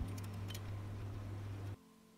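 A few sharp clicks from the plastic and metal collar and leg locks of a tripod light stand being handled, over a steady low hum. The hum cuts off suddenly near the end.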